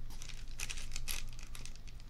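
Computer keyboard keys pressed several times in a quick run of light clicks.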